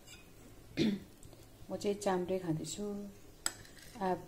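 A woman's voice talking, with a single spoon clink against a ceramic plate near the end.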